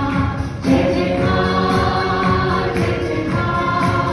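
Live Christian worship song: a woman sings lead into a microphone while the congregation sings along.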